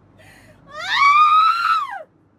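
A person screaming: one long, high-pitched scream of about a second that starts under a second in, rises and then falls away.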